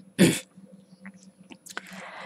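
A person's single short cough, about a quarter of a second in, close to the microphone.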